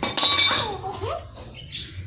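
A metal hand tool clinks against metal right at the start, leaving a brief high ringing, followed by a young child's short vocal sounds.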